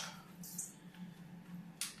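Plastic filter basket of an Aquael Unimax 250 canister filter being handled and fitted into the canister: a faint scrape about half a second in, then a single sharp plastic click near the end.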